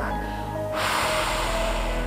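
A woman breathes out hard through pursed lips, emptying her lungs as the first step of Bodyflex diaphragmatic breathing. It is a single long, airy hiss that starts a little under a second in, over steady background music.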